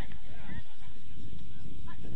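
Football players shouting short calls across the pitch, one about half a second in and one near the end, over a steady low rumble.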